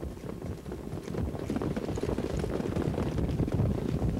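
Hoofbeats of a field of trotting Standardbred harness horses approaching the start, many overlapping strikes growing louder.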